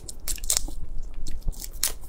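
Shell of a large cooked red prawn crackling and snapping as it is pulled apart by hand and bitten into, with a few sharp crunchy clicks.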